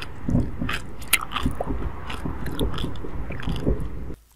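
ASMR mock eating sounds of biting and chewing ice: short crisp crunches a few times a second over softer, lower chewing.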